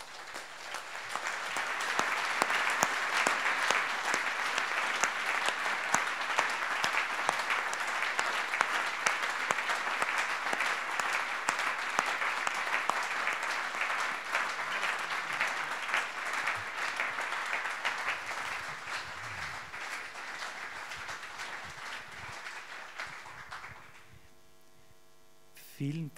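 Audience applauding. The clapping swells over the first couple of seconds, holds steady, and tails off near the end.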